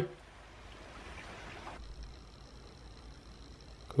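Faint background hiss and low rumble, with no distinct event. Near two seconds in the background changes to a quieter hiss carrying a faint high steady whine.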